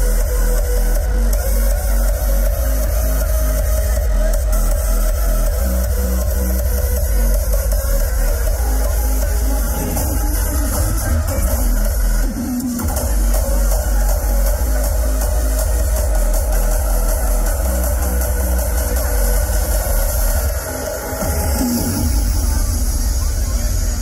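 Loud hard electronic dance music over a festival sound system, driven by a heavy bass kick drum. The kick drops out briefly about halfway through and again near the end.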